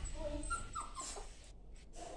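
A puppy whimpering: a few short, high whines in the first second or so, one falling in pitch, then quieter.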